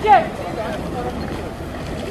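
Steady outdoor ambience with a rush of wind on the microphone and faint distant voices, after a voice calling out briefly at the very start.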